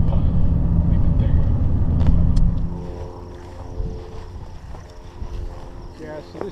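Engine and road rumble inside a moving car's cabin, a low steady drone with a hum. It drops off abruptly a little under three seconds in, leaving a much quieter stretch.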